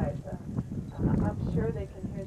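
People's voices talking, the words indistinct, over a low rumble.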